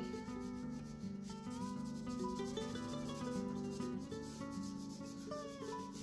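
Fingers rubbing soft pastel into paper, a soft dry rubbing, under background music.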